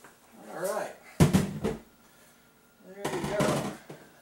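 A man's voice in short, unclear utterances, with a sharp thump about a second in that is the loudest sound.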